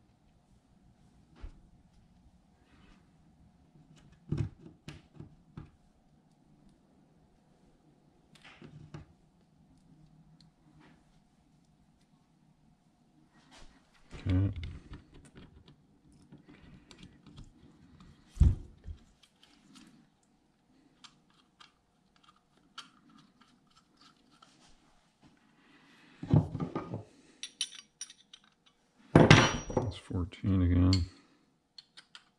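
Small metal carburetor parts and hand tools handled on a wooden workbench: scattered light clicks and knocks, a few louder single knocks, and a burst of clatter near the end as the tools are picked over.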